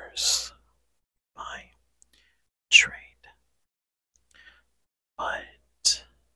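A man whispering close to a microphone in short, hissy bursts, about six of them, with silence between. The loudest comes just before the midpoint.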